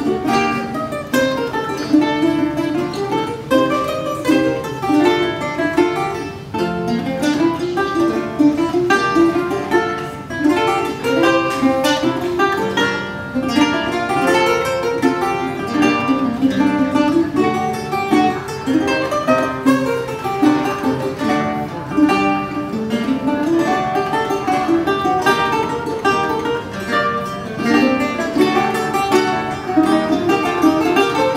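Duet of Renaissance lute and early guitar: a continuous run of quick plucked notes over picked chords, without voice.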